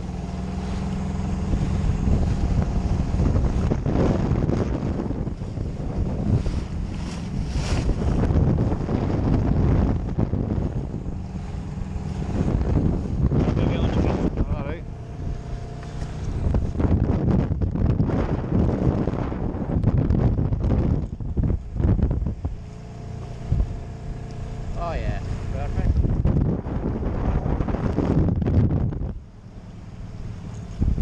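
Outboard motor of an RNLI Y-class inflatable running under way, with wind buffeting the microphone and water slapping and splashing at the hull. The sound drops back near the end as the boat slows close to the rocks.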